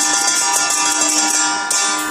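Taoist funeral-rite percussion: gongs and cymbals struck in a quick, steady rhythm, the gongs ringing on between strokes. A louder cymbal crash comes near the end.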